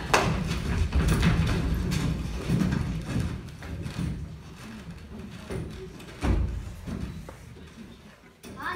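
Footsteps and thumps of actors moving about on a stage floor, densest in the first few seconds, with one heavier thud about six seconds in.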